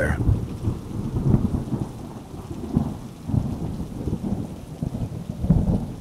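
Low rumble of thunder, rolling and swelling and fading in waves.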